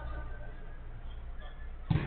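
Faint, distant shouts of players on a five-a-side football pitch over a steady low hum, with one sharp thud just before the end.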